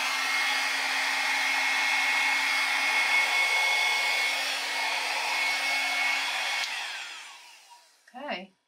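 Small handheld hair dryer blowing steadily, with a steady hum and a higher whine over the rush of air. About seven seconds in it is switched off and the whine falls in pitch as the motor winds down.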